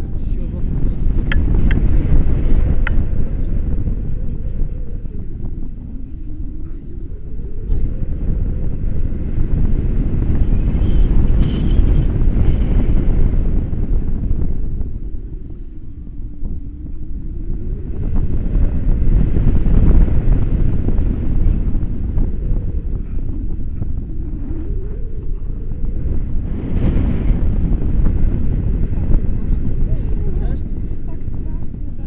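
Wind rushing over the selfie-stick camera's microphone during a tandem paraglider flight, a loud low rumble that swells and eases in long waves as the glider turns through the air.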